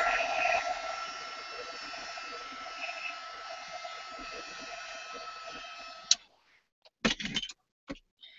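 Handheld hot-air dryer blowing steadily with a thin, steady whine, drying wet acrylic paint. It gets gradually quieter and is switched off about six seconds in, followed by a few short clicks and knocks.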